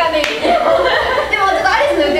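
Several young women laughing together, with a few hand claps near the start.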